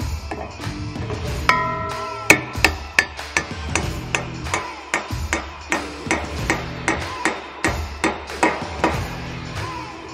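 Hammer blows on a bearing driver, tapping a new bearing into the hub housing of a strip-till row unit. The strikes come steadily, about three a second, from about two seconds in until near the end, over background music.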